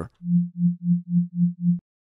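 A pure sine-wave bass tone from one oscillator of the Xfer Serum software synthesizer, pulsing six times in about a second and a half, each pulse swelling up and fading away evenly.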